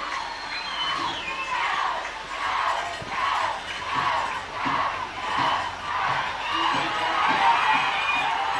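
Football crowd in the stands chanting and cheering in a steady rhythm, about three beats every two seconds.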